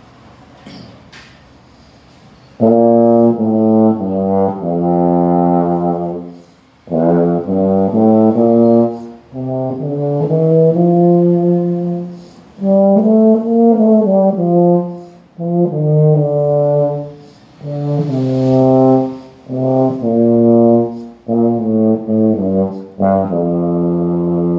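Four-valve euphonium played in the low register: a string of short phrases of held notes with breaths between them, starting about three seconds in. It is a little D-E-F-G-A scale, with D and G fingered on the fourth valve in place of valves 1 and 3.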